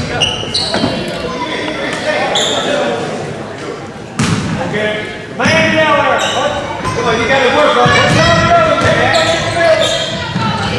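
A basketball being dribbled on a hardwood gym floor, with a sharp bang a little over four seconds in. Spectators' and players' voices echo in the gym throughout and get louder about halfway through.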